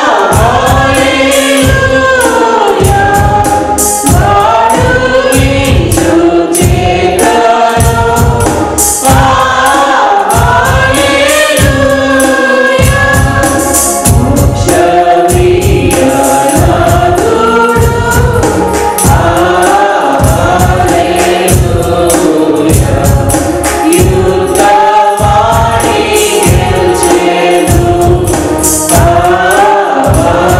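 Mixed choir of men and women singing a Telugu Easter hymn into microphones, over a steady percussion beat.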